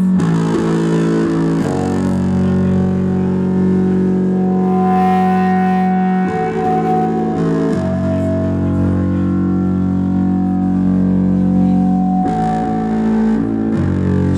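Live rock band playing loud, distorted music with electric bass, holding long chords that change every few seconds.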